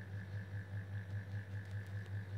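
Steady low background hum with a fainter higher tone, swelling and fading evenly about four times a second.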